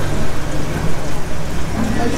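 Aquarium hall background noise: a steady rushing hiss, like running water, over a constant low hum, with faint voices.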